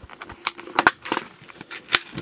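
Clear plastic hook box being opened and handled, with a run of small sharp clicks and rattles of the lid and of the steel hooks shifting inside; the loudest clicks come about a second in and near the end.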